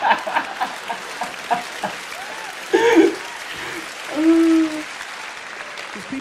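Theatre audience applauding and laughing, a steady clapping haze. A man's laughter and a few short vocal sounds come over it, the loudest about three and four seconds in.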